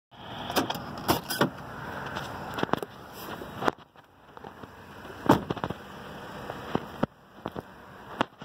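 Scattered sharp clicks and knocks over a steady rushing outdoor noise, the kind made by a handheld camera's microphone being handled and moved. The noise drops out abruptly twice.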